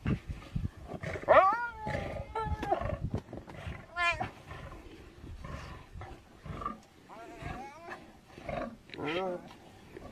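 A lion and a spotted hyena fighting over a kill: several bouts of high, wavering yelps and whines from the hyena over a rough, low growling.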